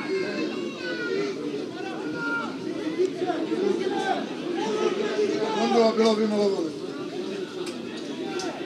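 Several overlapping voices calling and chattering at a distance on an open football ground, none clear enough to make out words.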